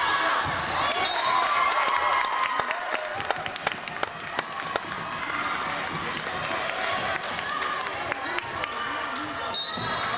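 Gymnasium sound during a volleyball match: players and spectators talking over each other, with a scatter of sharp knocks from a volleyball bouncing on the hardwood floor and being hit.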